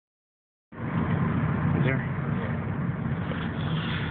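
Engine drone and road noise inside a moving car's cabin, starting abruptly a moment in.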